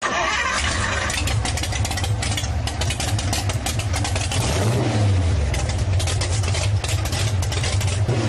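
A motor vehicle engine starting and revving, with a rapid crackle over a deep running note that rises and falls about halfway through.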